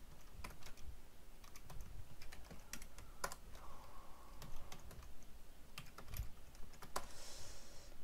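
Typing on a computer keyboard: irregular key clicks with short pauses between bursts of keystrokes.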